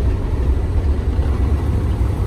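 Volvo D13 straight-six diesel of a 2013 Volvo VNL day cab with its jake (engine compression) brake applied, heard from inside the cab as a steady low rumble.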